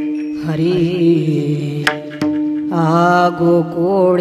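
Marathi devotional kirtan singing: a voice sings drawn-out, wavering phrases over a steady drone. Two sharp hand-cymbal (taal) strikes come about two seconds in, a fraction of a second apart.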